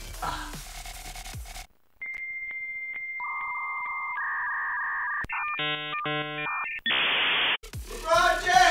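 Dial-up modem handshake sound effect. A steady high answer tone, then lower paired tones, then a quick run of stacked chord-like tones, then a short burst of hiss. It follows a brief moment of room sound under background music that cuts off about a second and a half in.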